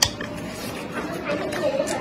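Close-up chewing of chopped fresh red chilies, with a sharp click right at the start as wooden chopsticks touch the metal tray. A faint voice-like murmur runs underneath in the second half.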